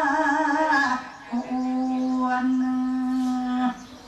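A single voice singing Korat folk song (pleng Korat), holding long drawn-out vowel notes: one held note breaks off about a second in, then a lower note is held steady for over two seconds and stops near the end.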